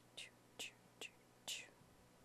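Four short, faint swishes of a paintbrush stroking wet acrylic paint across canvas, about one every half second.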